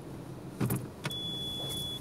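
A dull thump, then a click and a steady high-pitched electronic beep held for about a second.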